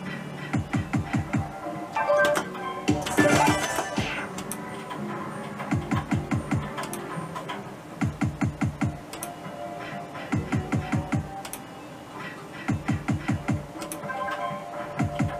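Merkur slot machine playing the Rising Liner game's spin sounds: spin after spin, bursts of quick ticks at about five a second as the reels run and stop, over electronic game tones. A short noisy rustle comes about three seconds in.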